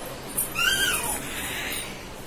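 A toddler's short, high-pitched squeal, rising and then falling in pitch, about half a second in, followed by a brief breathy noise.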